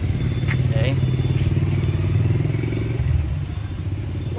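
A motor engine running steadily at an even pitch, fading out a little after three seconds in.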